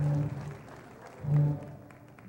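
Orchestral stage music from a theatre pit band: low held brass notes swell loudly twice, once at the start and again about a second and a half in, over a softer music bed.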